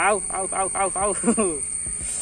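A man's voice in about six quick, evenly spaced pitched bursts over a second and a half, then it stops.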